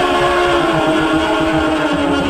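Music: a long held melodic note that steps slightly lower about halfway through, over a fast repeating low pulse and other sustained tones.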